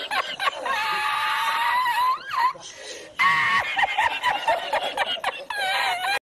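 A man laughing hard in long, high-pitched held cries, with a short break about halfway through and choppier bursts of laughter after it.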